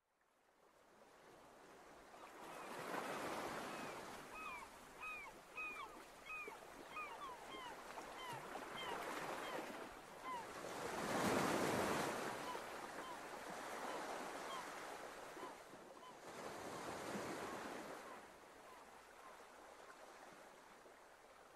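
Sea waves washing in swells, the largest about eleven seconds in, with a bird calling in a long series of short chirps, about two a second at first and sparser later.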